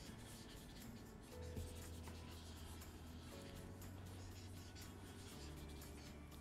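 Pens scratching on paper as several people write at once, faint, with soft background music underneath.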